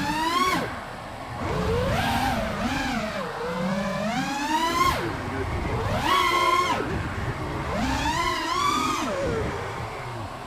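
FPV freestyle quadcopter's brushless motors whining, the pitch climbing and falling back about four times as the throttle is punched and chopped through flips and dives. The quad is running Betaflight 4.0.6 with its filters turned mostly off, and its motors sound smooth.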